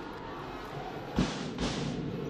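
Arena crowd noise with drumming from the stands, including two loud drum beats about half a second apart in the second half.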